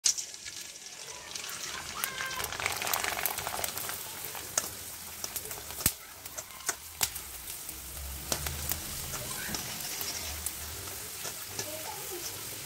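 Rice fryums (kaddi sandige) deep-frying in hot oil in a steel kadai: a steady sizzle with scattered sharp pops and clicks as the strips are stirred with a slotted spoon.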